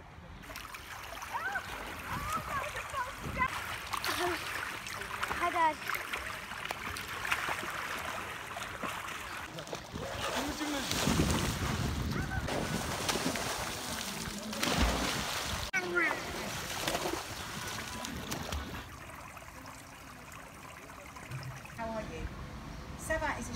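Splashing in a swimming pool, with children's voices calling and shrieking over it; quieter near the end.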